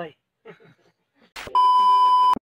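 A steady, loud test-tone beep of the kind laid over TV colour bars. It starts about one and a half seconds in, right after a short hiss of static, and follows a brief spoken goodbye.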